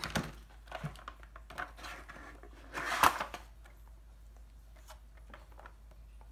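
Handling noises of a cardboard blade box: scattered light knocks and taps as a wooden table tennis blade is set into the box's cardboard insert, with one louder scraping rustle of cardboard about three seconds in.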